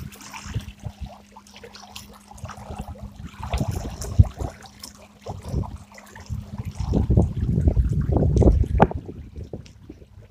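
Bison 12-volt electric trolling motor running at full speed, a steady low buzz, with water splashing and trickling past the stern. About two-thirds through the buzz fades under louder, lower churning of the water.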